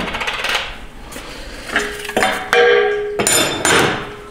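Metal transmission parts clanking as they are handled and set down. About two seconds in, a hard knock leaves several ringing tones hanging, and near the end comes a rattling, scraping clatter of metal.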